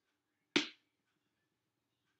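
A single sharp slap, slowed down in slow motion: one hit about half a second in that trails off over about a quarter second.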